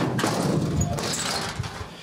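Close rustling and scraping handling noise, as things are moved about near the microphone. It starts suddenly and dies away just under two seconds later.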